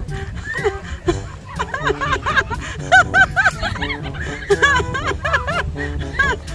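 Children laughing and squealing in quick, high, repeated giggles, over background music.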